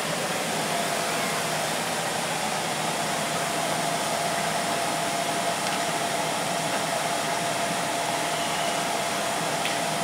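Steady rushing noise of a fan or blower running without change, with a faint constant hum.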